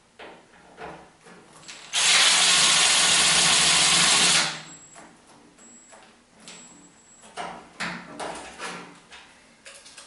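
Cordless drill running steadily for about two and a half seconds, driving a screw into a metal equipment rack. Scattered light clicks and knocks come before and after it.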